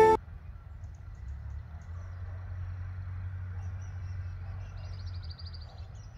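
Outdoor ambience of a steady low rumble with faint, scattered bird chirps. A short rapid bird trill comes about five seconds in.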